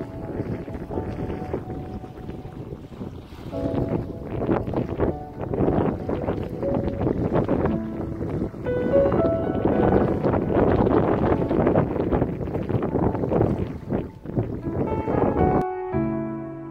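Wind buffeting the microphone in gusts, strongest in the middle stretch, over soft background music of sustained keyboard notes; the wind cuts off suddenly near the end, leaving only the music.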